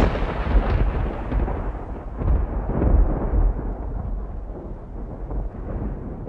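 A low, thunder-like rumble, a sound effect, slowly dying away with the high end fading first.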